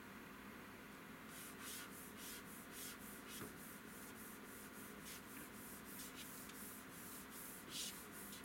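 Hands brushing and rubbing in quick, soft swishing strokes, about three a second. The strokes start about a second in, and the loudest comes near the end.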